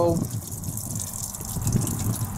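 Water pouring from the head of an RV water filter housing, its bowl broken off by a freeze, and splashing onto the sewer hoses below as the RV's water pump pushes it through. The flow is steady, over a faint pulsing low rumble.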